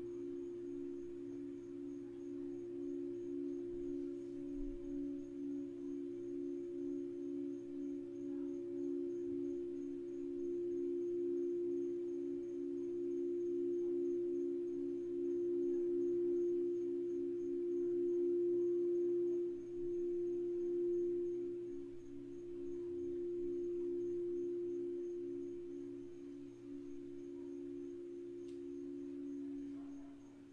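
Crystal singing bowls being sung: two steady, pure tones held together, the lower one pulsing in a regular wavering beat that quickens a little past the middle. The sound swells louder past the middle and eases off toward the end.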